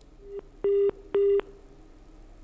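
Telephone line beeps: a brief faint beep, then two short pitched tones about half a second apart, heard as the phone link to a reporter connects.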